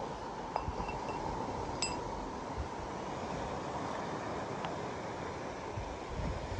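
Steady wind and sea noise on an exposed rocky shore, with a few light clinks of stone fossils being set down on rock, one giving a short ringing ping about two seconds in.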